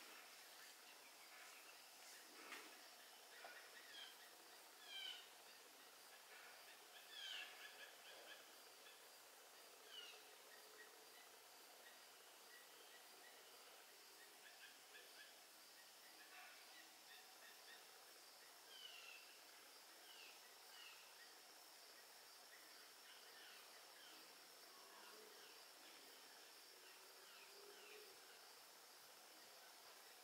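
Near silence: faint room tone with a steady high-pitched whine and scattered faint, short falling chirps.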